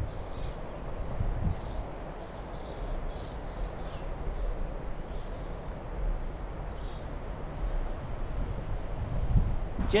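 Steady outdoor background noise with a low wind rumble on the microphone; no distinct knocks or clatter from the scooter.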